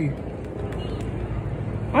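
Steady low rumble of outdoor background noise, with a man's voice starting again right at the end.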